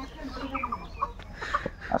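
Domestic chickens clucking in short, scattered calls, with a single sharp click near the end.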